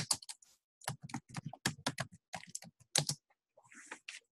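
Typing a short search query on a computer keyboard: a quick, uneven run of keystrokes with a brief pause about half a second in, stopping a little after three seconds.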